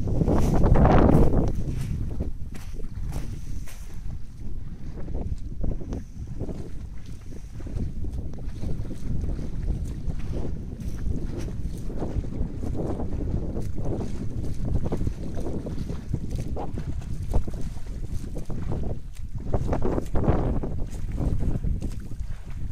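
Wind blowing on the microphone: a steady low rumble that swells louder about a second in and again near the end.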